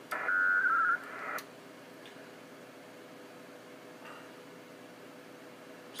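A WINMOR 4FSK digital data burst from the HF radio's speaker. It is a warbling cluster of tones lasting about a second, followed by a brief hiss, then only a faint steady hum. It is one leg of the handshake exchange between the two stations during a Winlink message transfer.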